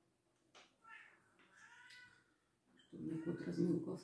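Domestic cat meowing a few times in short, pitched calls.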